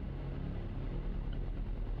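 A low, steady background drone with a faint hiss and no clear events.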